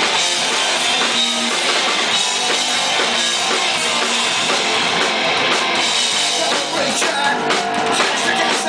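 Punk rock band playing live: distorted electric guitars, bass guitar and drum kit, loud and dense, with the bottom end thin as heard on a handheld camera's microphone.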